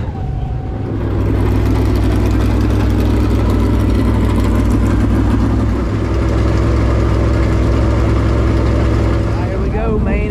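Dirt late model race car's V8 engine idling steadily, getting louder about a second in.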